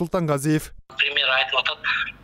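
Speech only: a voice for the first moments, then after a brief break a man talking over a video call, thin and cut off in the highs like a phone line.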